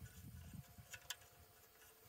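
Near silence, with faint handling sounds and a couple of faint clicks about a second in, as the wing nut holding the spreader's spinner disc is turned by hand.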